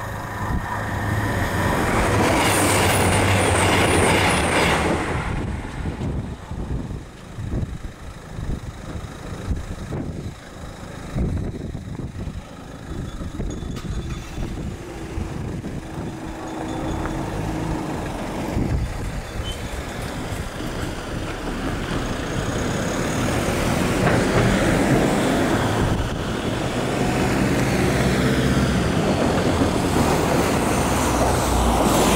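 A train passing over the level crossing, loudest in the first few seconds and dying away by about five seconds in. Around the middle a short, steady low hum comes as the barriers lift. From about twenty seconds on, road traffic crossing grows louder.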